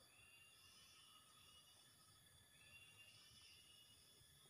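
Near silence, with a few faint thin high tones in the background.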